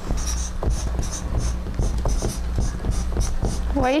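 Marker pen scratching across a white cardboard board in quick short strokes, about three a second, as letters are written.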